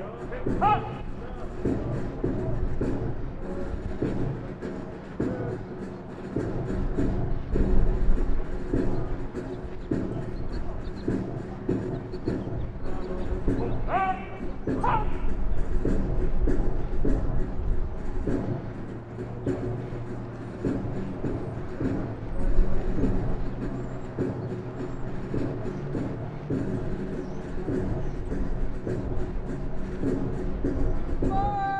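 A band plays a march with a steady beat of about two per second under held tones. About 14 seconds in, a voice calls out twice in quick succession.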